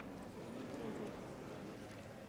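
Indistinct murmur of many people talking in a large room, with faint clicking.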